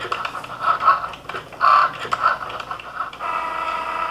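Cricut Joy cutting machine cutting vinyl: its motors whir in short pitched bursts as the blade and mat shuttle back and forth, then run as a steadier tone near the end.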